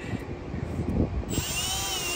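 Cordless drill running as its bit is driven into a lithium-ion battery pouch cell to puncture it, starting a little over a second in, its whine dipping slightly in pitch as the bit bites.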